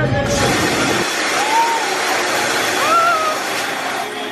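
A long, loud rushing hiss of a scare-maze effect starts a moment in, as the maze's bass-heavy soundtrack drops out. Two short rising-and-falling cries sound over the hiss.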